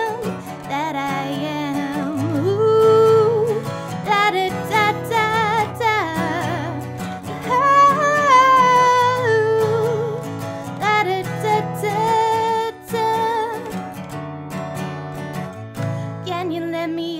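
A woman singing a slow Americana song over her own strummed acoustic guitar, holding long notes with vibrato.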